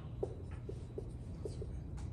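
Dry-erase marker writing on a whiteboard: about five short, separate strokes.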